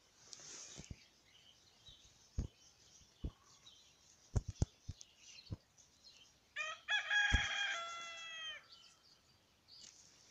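A rooster crowing once, about seven seconds in: a few quick opening notes, then a long held call that drops in pitch at the end. Scattered soft knocks come before it.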